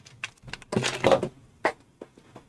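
Handling noise: a few short clicks, then a brief rustle and one more click, as headphones are pulled off close to the microphone.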